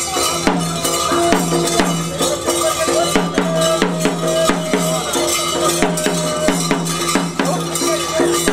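Two dolu barrel drums beaten in a steady ritual rhythm, about two strokes a second, each stroke's tone dropping in pitch, with sustained ringing tones held above the beat.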